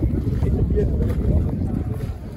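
Wind buffeting the microphone: a loud low rumble, with people talking faintly behind it.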